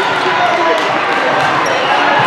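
Volleyball hall ambience: many overlapping voices of players and spectators talking, with volleyballs bouncing on the court floors now and then.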